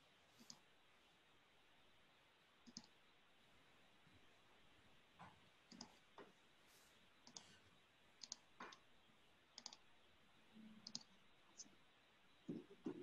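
Faint computer mouse clicks, a dozen or so at irregular spacing, some in quick pairs, over near-silent room hiss.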